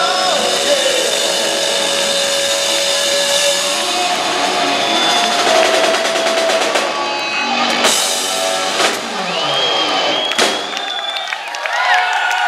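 Live rock band with electric guitar and drum kit playing the closing bars of a song, ending on a few separate drum and cymbal hits; the low end drops out about eleven seconds in as the band stops.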